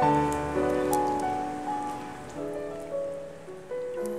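Background music: a slow piano melody with notes held and overlapping.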